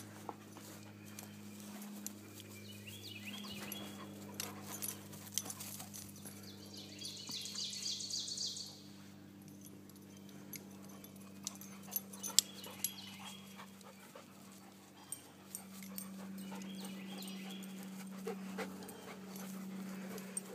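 Dogs panting and moving about on grass, with scattered small clicks and rustles. A steady low hum runs underneath, and a high buzzing sound comes in for about two seconds near the middle.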